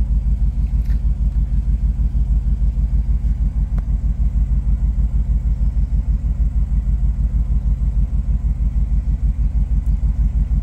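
GM truck engine idling steadily, heard from inside the cab as a low, even throb.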